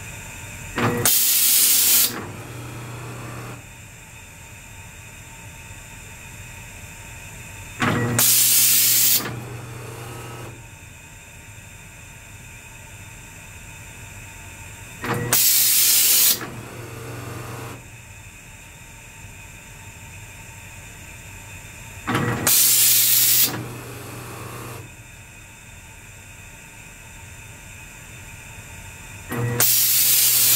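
Spray gun of a Spraymation automatic test panel machine making painting strokes: a loud hiss of atomizing air switches on for about a second, five times at roughly seven-second intervals, each followed by a lower hum before a quieter pause between strokes.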